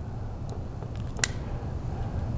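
A Type 26 top-break revolver being closed: the barrel and cylinder swing up and the top latch catches with one sharp metal click about a second in, over a low steady hum.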